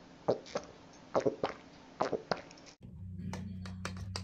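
A person drinking water: about six short, separate gulps and swallows over two and a half seconds, followed by a few faint clicks near the end.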